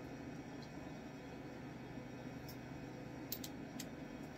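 Steady low background hum of room tone, with a few faint short ticks about two and a half to four seconds in.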